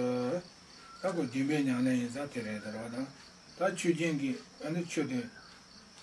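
A man speaking in Tibetan, in short phrases with brief pauses between them.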